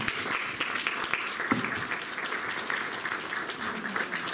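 Audience applauding, many hands clapping at a steady level.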